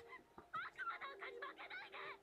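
Faint dialogue from the subtitled anime episode: a shrill, wavering voice shouting in Japanese, with a short break near the start.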